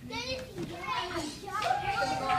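Young children's high voices, chattering and calling out over one another, with one voice holding a longer call near the end.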